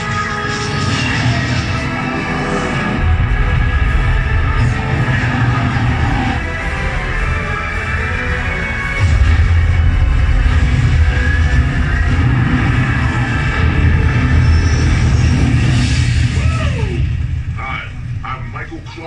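Loud film-montage soundtrack played over a theater's speakers: music over a heavy low rumble of explosion effects that thickens about three seconds in and grows loudest about nine seconds in, with a falling whoosh near the end.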